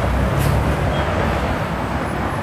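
Road traffic on a busy city street: a steady noise with a low engine rumble that eases off after about a second and a half.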